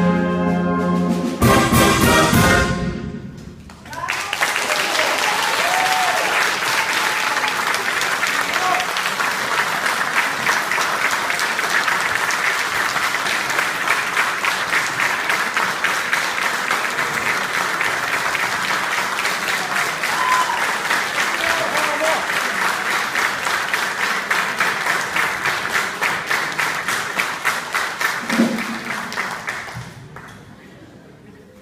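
A youth wind band of flutes, clarinets and brass ends a piece on a final chord that cuts off about three seconds in. After a brief lull the audience applauds steadily.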